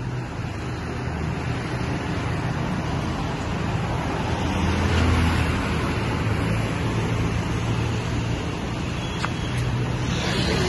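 Road traffic passing: a steady rumble of vehicle engines and tyres that swells about five seconds in.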